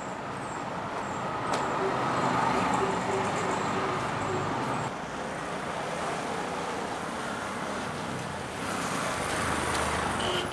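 Street traffic noise, with a motorcycle riding up and drawing near, its engine rumble growing louder toward the end.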